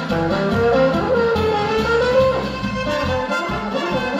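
Oberkrainer polka band playing live: a baritone horn carries a smooth, sliding solo melody over accordion, clarinet, trumpet and guitar, with a regular oom-pah bass beat.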